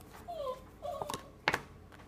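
A dog whimpering three times, faint short whines that fall in pitch. A single sharp tap about one and a half seconds in comes as a tarot card is laid down.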